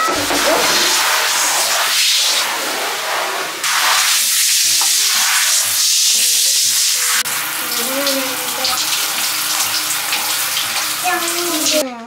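Water spraying from a handheld shower head against a bathroom wall, a loud steady hiss, rinsing off bubble foam.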